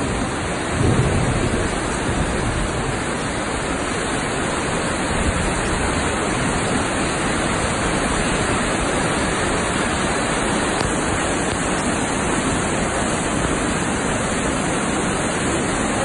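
Heavy rain and a muddy flash flood rushing down a street: a dense, steady wash of water noise, slightly heavier and lower about a second in.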